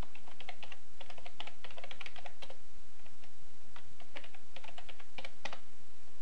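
Computer keyboard typing in two quick runs of keystrokes with a pause of about a second and a half between them, the last keystroke the loudest.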